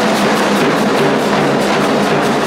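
Loud band music with a fast, steady drum beat on a marching side drum, over held low notes.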